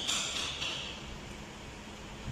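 A high-pitched ringing tone that fades away within the first second, over a faint steady low hum.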